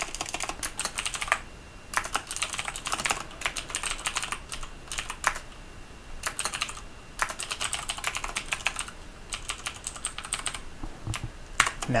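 Typing on a computer keyboard: quick runs of keystrokes broken by short pauses.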